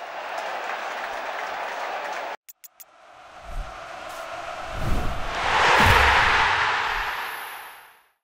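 Stadium crowd cheering that cuts off suddenly about two seconds in. A few quick clicks follow, then a swelling whoosh with low thumps, loudest about six seconds in and fading away at the end: an end-card sound effect.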